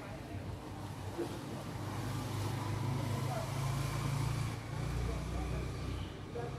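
Low engine rumble of a passing motor vehicle, swelling through the middle and dropping to a deeper rumble near the end.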